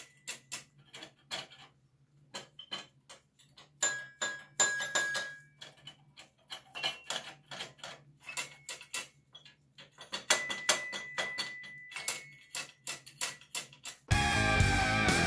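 Keys of a rusty 1940s metal toy piano being pressed in quick succession: mostly dry clicks and clacks, because the keys don't all work. Only now and then does a key sound a thin, ringing note, once about four seconds in and again about ten seconds in.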